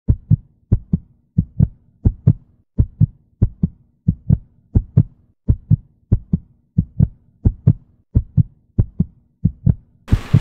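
Heartbeat sound effect: low paired lub-dub thumps, evenly paced at about one and a half beats a second.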